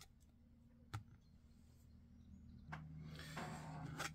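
Near silence: one faint click about a second in, then faint rustling near the end as the fountain pen is handled and moved across the desk mat.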